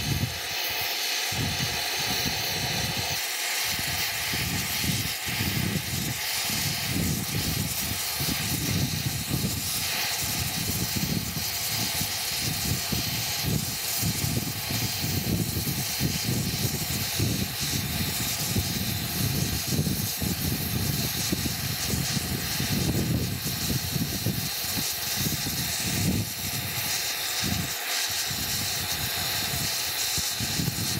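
Oxy-fuel torch with a brazing tip burning steadily against a steel steam-pipe joint, heating it for brazing: a constant hiss of the flame over a low, fluttering rumble.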